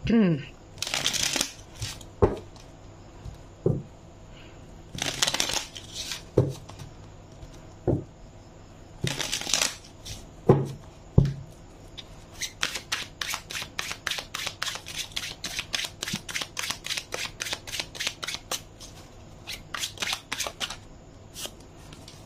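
A tarot deck being shuffled by hand. First come three riffles, each a rustle of about a second, with single knocks of the deck between them. Then a long overhand shuffle gives a quick patter of card slaps, about four to five a second, for some eight seconds.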